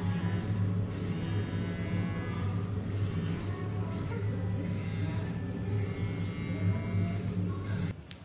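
A handheld red-light skincare massage device buzzing with a steady low hum as it is run over the neck, with background music.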